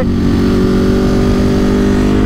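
Ducati Monster 937's 937 cc Testastretta V-twin running steadily under power in third gear at about 100 km/h, with wind noise on the microphone.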